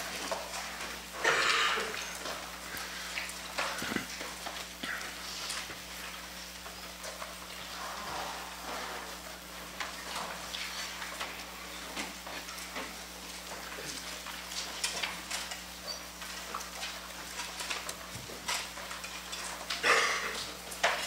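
Small handling noises: scattered soft clicks and rustles, with a louder rustle about a second in.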